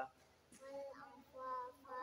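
A young boy's voice reciting an Arabic prayer in a slow, sing-song chant: a short pause, then two drawn-out phrases starting about half a second in.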